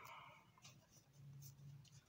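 Near silence, with faint scratchy rustling of a gold peel-off face mask being pulled off the skin.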